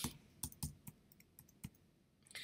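Computer keyboard being typed on: a handful of faint, separate keystrokes at an uneven pace, stopping about two-thirds of the way through.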